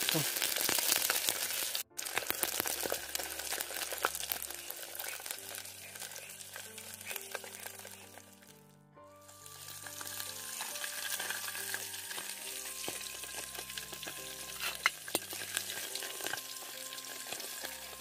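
Crackling and sizzling of a wood campfire under a pot of fish, a steady hiss full of small pops. Soft background music with long held notes plays over it, with a brief break about two seconds in and a quieter spell around the middle.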